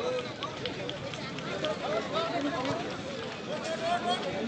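Several spectators talking and calling out at once, their voices overlapping in a steady outdoor chatter.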